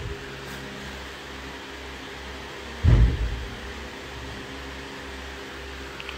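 Steady low hum of room ventilation, with one loud, low thump about three seconds in.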